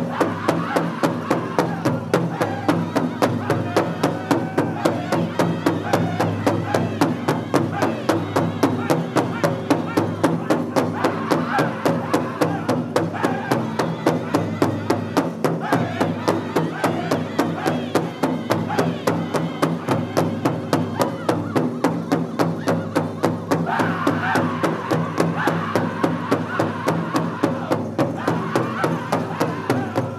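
Northern-style powwow drum group singing a fancy dance song: several men's voices in high-pitched unison over a large powwow drum struck in a fast, even beat.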